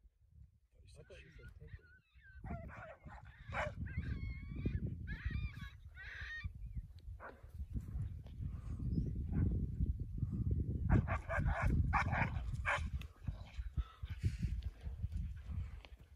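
Distant canines barking and yelping as dogs fight a wild canid: high, wavering yelps come mostly in the first half, with more cries a few seconds before the end. A heavy low rumble of wind on the microphone runs under them.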